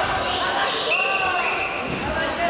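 Several voices shouting and calling out over one another in a large sports hall, with dull thuds among them.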